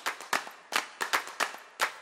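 A steady series of sharp, clap-like percussive hits, about two to three a second, each with a short ringing tail.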